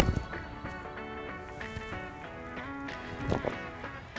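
A single sharp crack of a seven iron striking a golf ball at the very start, then background music with sustained notes.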